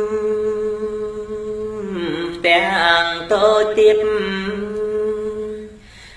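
Khmer smot, a Buddhist chanted poem, sung unaccompanied by a solo male voice: one long held note for about two seconds, then a sliding, wavering ornamented line that fades away near the end.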